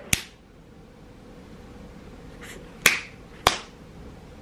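A few sharp clicks in a quiet room: one just after the start, then two about half a second apart near the end, with a softer faint sound just before them.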